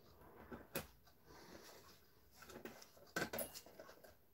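Faint handling noises from a Hermle 1161 clock movement's brass plate being worked loose from the works: a sharp click about a second in, then a short cluster of small metallic clicks and rattles near the end.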